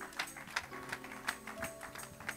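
Scattered hand claps from a congregation, several a second and unevenly spaced, over quiet music of held notes.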